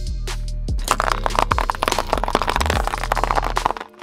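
Hard candy canes cracking and crunching under a car tyre: a dense run of sharp cracks starting about a second in and stopping just before the end, over background music.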